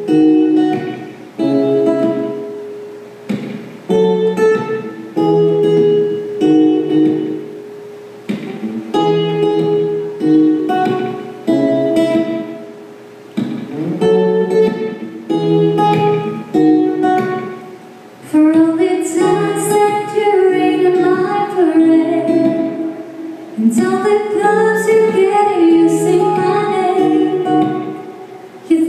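Live acoustic guitar playing a repeating picked chord pattern, with a woman's voice singing over it in the second half.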